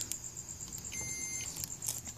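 An ESR meter, the Capacitor Wizard, gives one short beep about a second in, lasting about half a second. This is the chime that signals a capacitor with good ESR. A few faint clicks fall around it.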